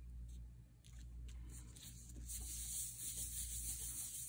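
Faint rustle of hands pressing and rubbing a paper envelope flat to set the glue, with a few light ticks at first and a steady papery hiss of a hand sliding over the paper from about halfway.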